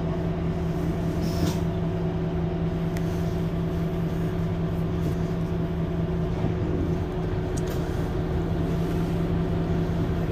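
Mercedes-Benz Citaro C2 Hybrid city bus standing still and running, a steady, even hum.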